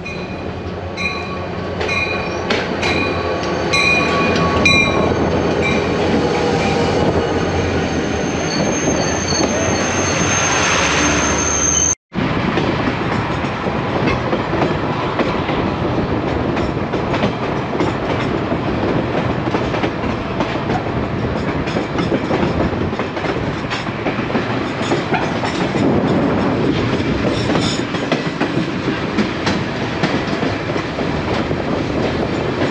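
El Chepe passenger train's diesel locomotive pulling into a station, with a high ringing repeating about twice a second and then a high squeal as it slows. After a cut about 12 seconds in, the steady rumble and clatter of the moving train, heard from its open window.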